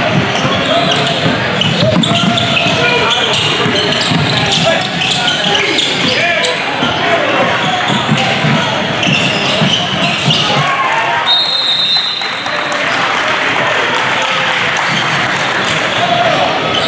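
Live gym sound of a basketball game: players' and spectators' voices and shouts, with a ball bouncing and shoes on the hardwood court. About eleven seconds in comes a short high whistle blast, after which the sound is a little quieter.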